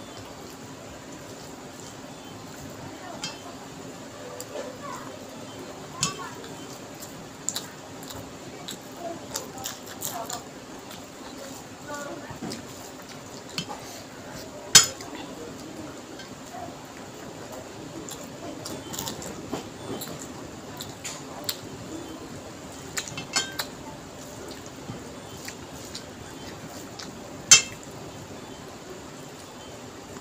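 Eating by hand from a stainless steel plate: fingers working rice and curry on the metal with scattered sharp clinks, the loudest about halfway and near the end, and soft chewing and mouth sounds between them.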